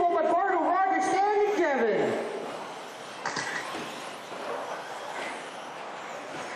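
High whine of an RC buggy's 17.5-turn brushless electric motor, wavering in pitch with the throttle, then falling away about two seconds in. After that, a fainter steady hiss of cars running on the track.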